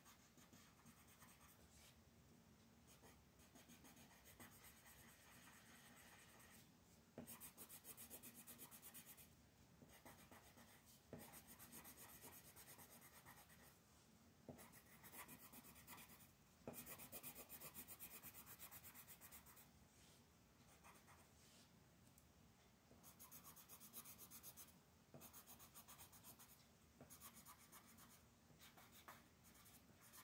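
Faint scratching of a coloured pencil shading on coloring-book paper in rapid back-and-forth strokes. It comes in stretches of a few seconds with short pauses between them.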